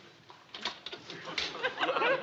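A few short knocks and scrapes of a plastering trowel working against the hawk and ceiling, then studio audience laughter building from about a second and a half in.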